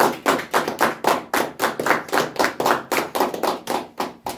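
One man clapping his hands at a steady pace, about four claps a second, stopping just before the end.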